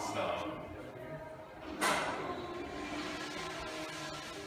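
Indistinct voices in a hallway, with a single sharp, loud noise about two seconds in.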